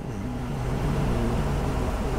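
2011 Chevrolet Tahoe's 5.3-litre V8 idling, heard from inside the cabin as a steady, quiet low hum.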